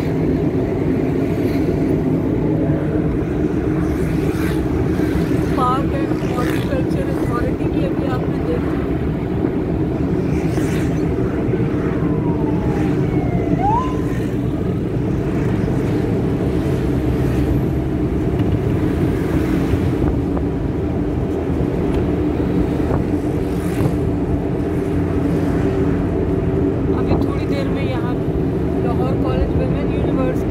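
Steady engine drone and road noise heard from inside a moving vehicle's cabin in city traffic, with a few brief higher-pitched gliding tones now and then.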